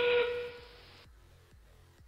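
Electronic background music: a held note fades over the first half-second and cuts off abruptly about a second in, leaving only a faint low beat.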